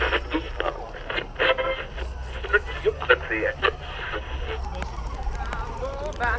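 Indistinct voices of people talking, over a steady low rumble. Music with singing begins near the end.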